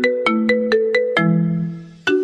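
Smartphone ringtone signalling an incoming video call: a quick melody of short struck notes, about four a second, ending in a lower held note that rings and fades out.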